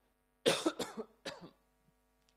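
A man coughing into his hand: one sharp cough about half a second in, followed by two weaker ones.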